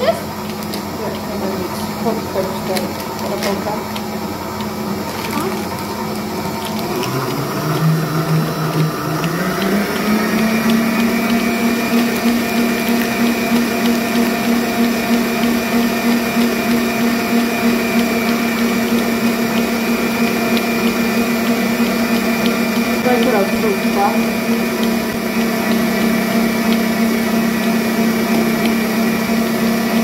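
Electric stand mixer running steadily as it whips egg whites for a sponge cake. About seven seconds in, its motor pitch steps up over a few seconds as the speed is raised, then holds steady at the higher speed.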